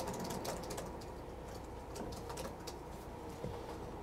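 Quiet room tone: a steady low hum with faint scattered clicks.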